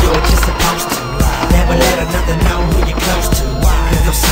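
Hip hop music over a skateboard on stone paving: wheels rolling and the board knocking against the ground as a flip trick is tried.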